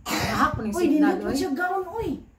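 People's voices exclaiming and talking, opening with a sudden loud, breathy burst.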